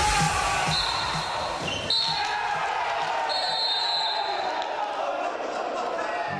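Live sound of an indoor futsal match in an echoing sports hall: a ball strike about two seconds in, players' voices calling out, and several high shrill whistle blasts, the longest lasting over a second.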